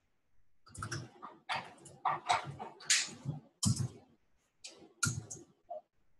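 Computer keyboard typing: an irregular run of short keystroke clatters, starting about a second in and going on almost to the end.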